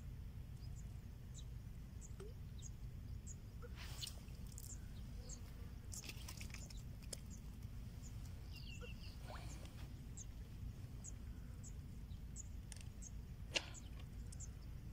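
Quiet waterside outdoor sound: a low steady rumble under a short high chirp that repeats about twice a second. A few faint clicks come and go, with one sharp click near the end.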